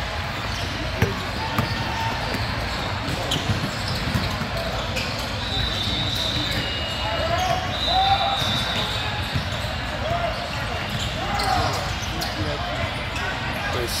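A basketball being dribbled and bouncing on an indoor court, short knocks scattered all through, in a large echoing hall. Voices of players and spectators carry in the background.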